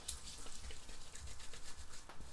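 Hands rubbing water-based pomade between the palms and working it into dry hair: a continuous run of quick, soft, sticky crackles and rustles.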